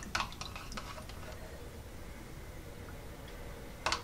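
Metal teaspoon stirring milk with red food colouring in a plastic measuring jug: faint liquid stirring, with a few light clicks of the spoon against the jug in the first second and again just before the end.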